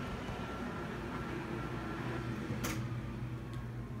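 Room fan running with a steady low hum, a faint high tone fading out in the first second or so. A single sharp click about two and a half seconds in.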